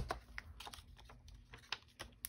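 Light clicks and taps of papercrafting supplies being handled on a cutting mat: one sharper tap at the start, then a scatter of fainter clicks a few tenths of a second apart.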